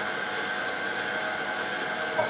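Electric stand mixer running steadily, an even motor whir with a steady whine, its beater working a meatloaf mixture.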